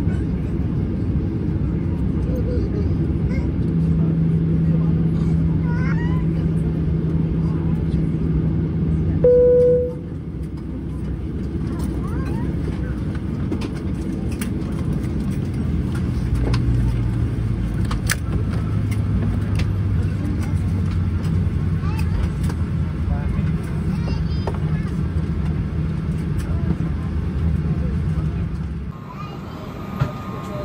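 Boeing 737-800 cabin noise while taxiing: a steady low rumble and hum from the engines at idle. A short tone sounds about nine seconds in, after which the rumble is a little quieter.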